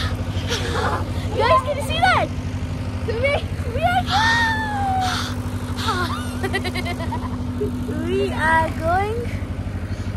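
Girls shrieking and laughing excitedly, with a long falling squeal about halfway through, over a steady low mechanical hum.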